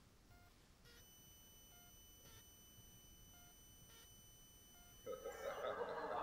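A quiet hall, nearly silent, with faint clicks about every second and a faint steady high electronic tone. About five seconds in, louder noise from the audience starts.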